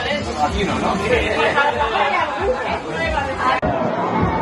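Several people talking over one another, a loud mix of chatter with no single clear voice. It breaks off abruptly about three and a half seconds in, and similar chatter carries on.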